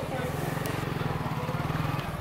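A small engine running steadily at idle, a fast even low putter, with people talking in the background.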